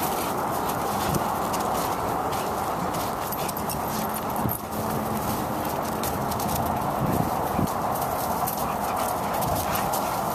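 Dogs at rough play: panting and paws scuffling and pattering over dry leaves and wood chips, with many short crackles, over a steady background noise.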